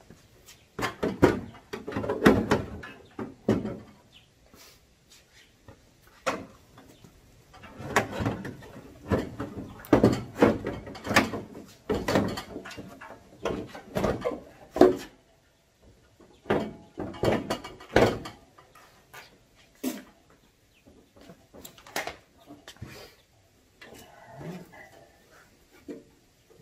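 Plastic hood of a John Deere lawn tractor being handled and fitted onto the frame: bursts of clunks, knocks and rattling clatter with short pauses between them.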